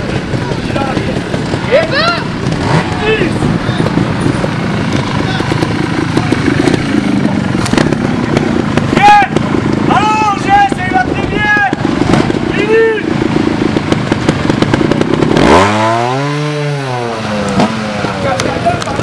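Trials motorcycle engine running and blipping the throttle on a rocky climb, with voices calling out several times around the middle. Near the end comes one long rev that rises and falls.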